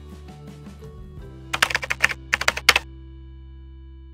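A quick run of computer keyboard keystrokes, about a dozen clicks over just over a second starting about a second and a half in, over soft background music.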